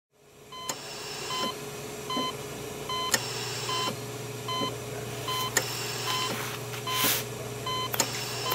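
Steady electronic beeping, one short tone about every 0.8 seconds, with a few sharp clicks and a brief hiss near the end.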